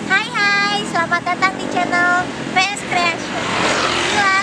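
A young woman speaking in a bright, lively voice, with road traffic noise behind her that swells briefly near the end as a vehicle passes.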